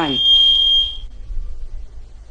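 Public-address microphone feedback: one steady, high-pitched ringing tone that dies away about a second in.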